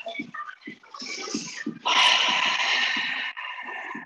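A loud, whooshing exhale of breath close to the microphone starts about two seconds in and fades over a second and a half. Before it come a few short, soft knocks of movement.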